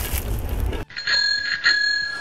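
A hissing noise cuts off abruptly under a second in. A bell then rings with a steady high tone that swells twice.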